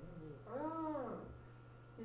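A single short call, rising and then falling in pitch, about half a second in, over a faint steady hum.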